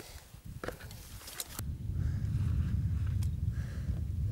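Wind buffeting the microphone on an exposed rock face: a low rumble that starts abruptly about a second and a half in, with a few faint clicks before it.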